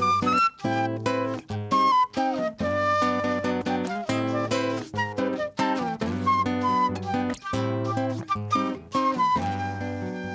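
Transverse flute playing a melody over a strummed acoustic guitar.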